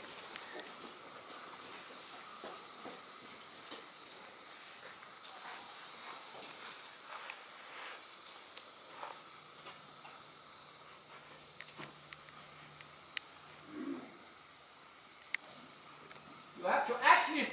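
A horse trotting on sand arena footing, heard faintly: a steady hiss with scattered sharp clicks at irregular spacing.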